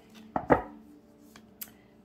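Tarot deck being handled and cards pulled from it: two sharp knocks close together about half a second in, the second the louder, then a couple of faint card clicks.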